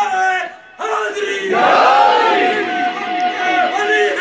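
A man chanting a naat, an Urdu devotional poem. His voice breaks off briefly just before a second in, then holds one long note for most of the rest.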